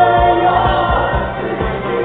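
Live synth-pop band music: a sung vocal line held over a steady electronic beat.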